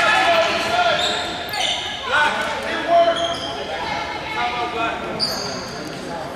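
Indistinct voices of players and spectators calling out in an echoing gym, with short high sneaker squeaks on the hardwood court about one and a half seconds in and again near the end.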